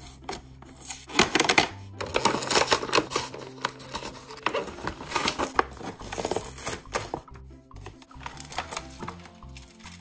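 Clear plastic blister packaging and cardboard crinkling and crackling in quick irregular bursts as a toy box is opened by hand, loudest about one to three seconds in, over background music.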